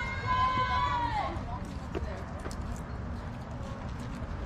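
A person's long, drawn-out shout, held on one pitch and then falling away a little over a second in, with a short knock about two seconds in. A steady low rumble runs underneath.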